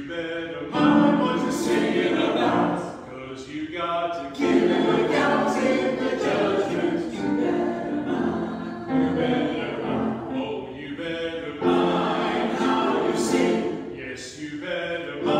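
Church choir of mixed men's and women's voices singing together, in long phrases broken by a few short gaps.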